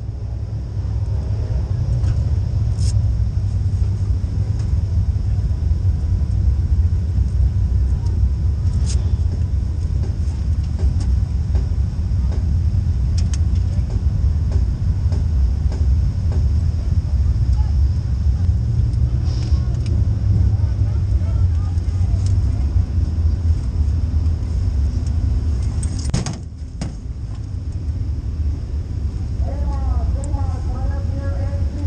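Steady low engine rumble heard from inside a dirt late model race car's cockpit, with a few sharp clicks and knocks scattered through it. The rumble dips briefly a few seconds before the end.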